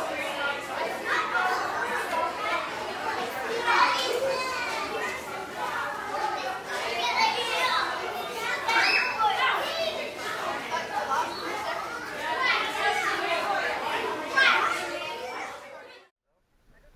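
Many voices, adults and children, talking and calling over one another, with no clear words standing out.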